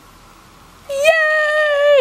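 A toddler girl's long, high-pitched sung call, starting about halfway in and held on one note with a slight fall for about a second.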